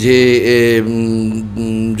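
A man's voice holding out one syllable in a long hesitation ("je…"), at a nearly level pitch with a brief dip near the start and a short lull near the end, over a steady low hum.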